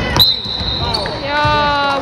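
Referee's whistle blown in one long, steady blast just after a shot under the basket, stopping play; voices call out over it.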